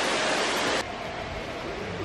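Steady rushing of a large indoor man-made waterfall and its falling spray. Under a second in, the sound drops abruptly to a quieter, duller hiss.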